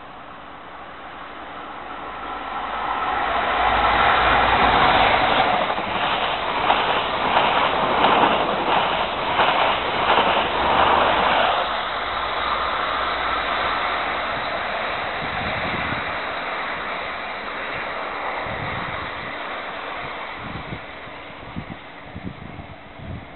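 InterCity 125 High Speed Train with Class 43 diesel power cars passing through at express speed without stopping. The sound builds as it approaches and is loudest from about four to twelve seconds in, with a rhythmic clatter of wheels over the rails. It then fades slowly as the train runs away.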